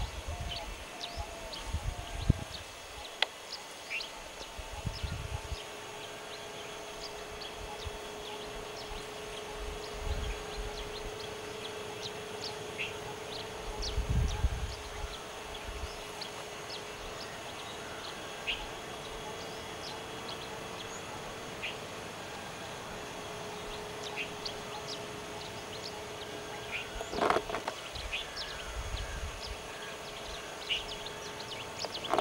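Dry-forest ambience: scattered short bird chirps over a faint steady hum, with low rumbles at times and one sharp knock near the end.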